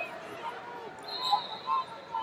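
Scattered shouting voices of spectators and coaches echoing in a large arena hall, with short loud shouts in the second half.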